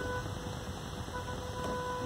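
Stopped traffic heard from inside a Volkswagen car's cabin: a low steady rumble of idling engines with a steady high-pitched tone over it.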